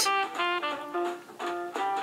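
Background music: a melody of short, separate notes.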